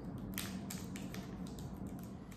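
Small snack being handled and eaten by hand: several faint, irregular clicks and crackles over a low steady hum.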